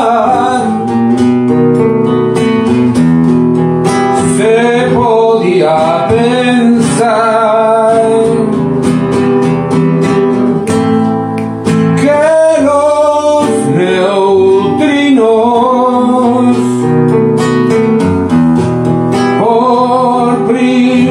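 A man singing a song to his own acoustic guitar accompaniment, the guitar strummed and plucked under sustained sung notes with vibrato.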